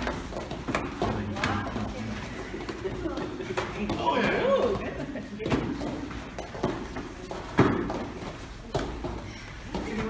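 Thuds of taekwondo sparring, kicks landing on padded chest protectors and feet on foam mats. The thuds come irregularly, the loudest about two-thirds of the way through, over voices and chatter in a large hall.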